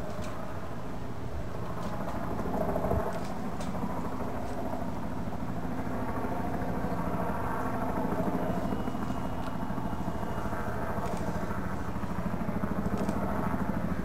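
A steady low engine drone, with a few faint sharp clicks over it.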